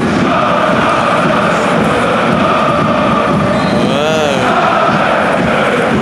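A football stadium crowd singing a chant together, many voices holding a steady sung line. A brief note rises and falls about four seconds in.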